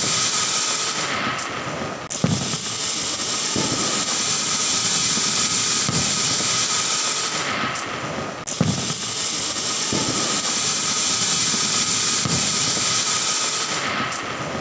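Ground fountain firework (a flower pot) hissing steadily as it sprays sparks, with a sharp crack about two seconds in and another about eight and a half seconds in.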